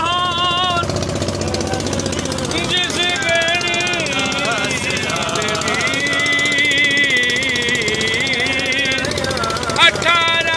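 A motorboat's engine running steadily with a fast, even knocking beat, with men's voices loud over it.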